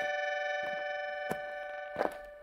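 A held accordion-toned chord slowly fading at the end of the instrumental introduction, with a few faint clicks over it.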